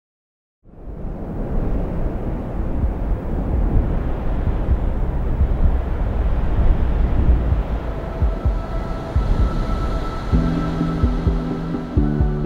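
A low, steady rumbling noise starts about half a second in as the music video's ambient intro; faint held tones join it, and a little after ten seconds a sustained chord comes in as the song's music begins.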